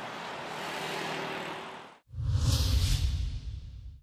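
Road traffic passing, cars driving by, fading out about two seconds in. Then a news-channel ident sound effect starts: a whoosh over a strong low rumble.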